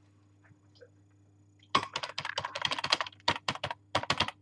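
Rapid typing on a computer keyboard, a quick irregular run of key clicks that starts about two seconds in, after a near-silent start with a faint low hum.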